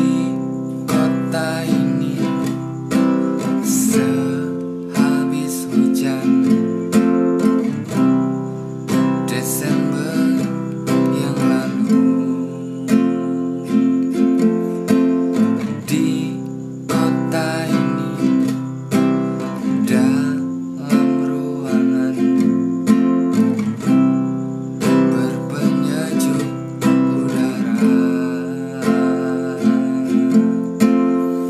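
Acoustic guitar strummed in a steady down-down-up-up-down-down pattern, alternating between C and F chords.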